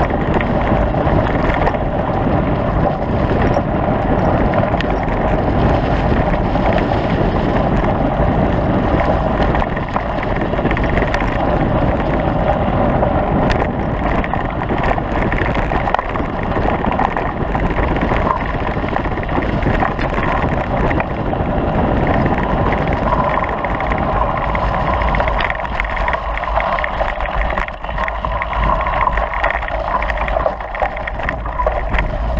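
Steady wind buffeting the microphone of a camera riding fast down a rough dirt track, with a continuous rumble from the ride over the ground.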